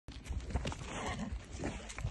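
Goats playing: hooves scuffling on dry dirt, with a few short knocks as one rears and butts the other.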